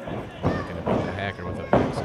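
A few sharp thuds of wrestlers moving on a wrestling ring's canvas, the last about three-quarters of the way through, over faint voices.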